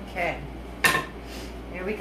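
A metal utensil set down or knocked against something hard: one sharp clink with a short metallic ring, about a second in.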